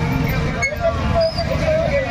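Motorcycle engines running, with a crowd's voices over them.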